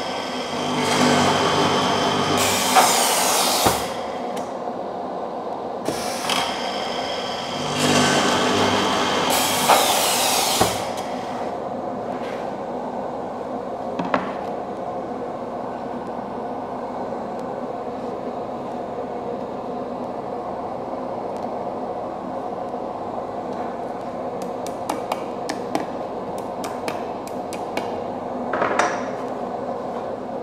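Blum MINIPRESS top boring machine drilling dowel holes into a melamine chipboard panel in two runs of about three to four seconds each, one after the other. Afterwards a steady lower hum, with a few light knocks and clicks as the panel is handled.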